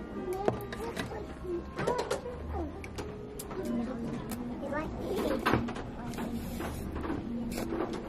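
Restaurant dining-room sound: voices in the background with curving pitch, and repeated short clicks and taps of ceramic tableware and chopsticks.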